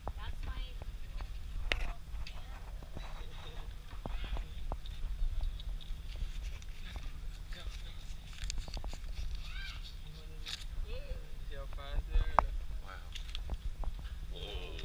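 Intermittent faint talk over a steady low rumble, with a few sharp clicks and knocks; the loudest click comes near the end.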